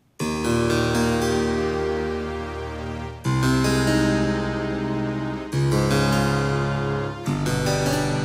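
Sampled harpsichord layered with a soft string pad (IK Multimedia Philharmonik 2's 'Harpsi-Pad Lower Kybd' patch) playing four held chords with low bass notes, each chord changing after about two seconds.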